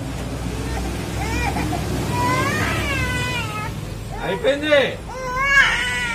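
A baby crying: a long, high-pitched cry that rises and falls in the middle, and another starting near the end, over a steady low hum.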